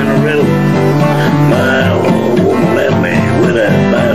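Steel-string acoustic guitar strummed in an outlaw-country blues song, with a man's rough singing voice over the chords.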